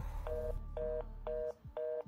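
Telephone busy signal heard from a landline handset: four short, even beeps of a steady two-note tone, about two a second, over a low hum in the first part, the sign that nobody is on the line.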